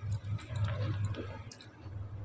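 A pause without speech: a low steady hum with a few faint clicks.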